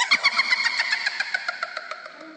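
A ringtone made of a rapid, engine-like rattle: fast ticks over a slowly falling tone, fading away toward the end.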